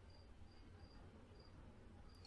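Near silence: faint room tone with a cricket chirping softly, short high chirps repeating a few times a second.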